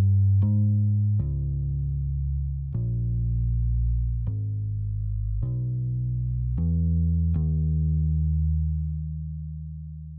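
Background music: low plucked notes, a new note every second or so, the last one held and fading away near the end.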